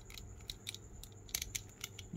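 Faint, irregular clicks of a NECA Robocop action figure's plastic leg joints being bent by hand.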